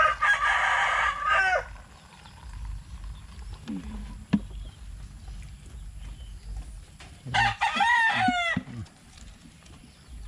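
A rooster crows twice: once at the start and again about seven seconds in, each crow about a second and a half long and ending in a falling note.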